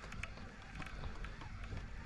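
Low steady rumble of wind on the microphone, with a few faint clicks.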